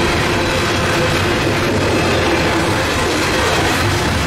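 CSX coal train's open-top coal cars rolling past close by: a loud, steady rumble and rattle of steel wheels on rail, with a faint steady ringing note above it.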